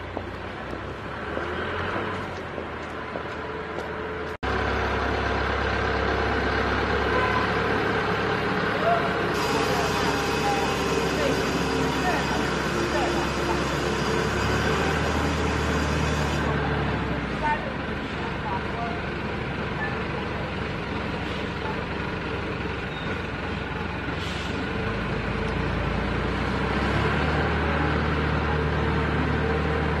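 Steady low rumble with indistinct voices in the background. It jumps suddenly louder about four seconds in, and a high hiss joins it for about seven seconds in the middle.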